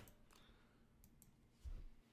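Near silence broken by a few faint computer mouse clicks, with a soft low bump near the end.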